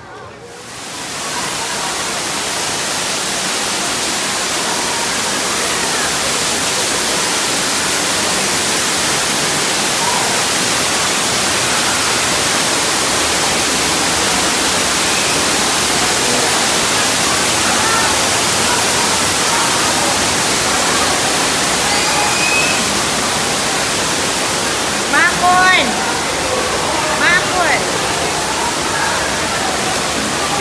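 Steady rushing of falling water from a pool waterfall in a rock grotto, starting about a second in, with brief voices calling out near the end.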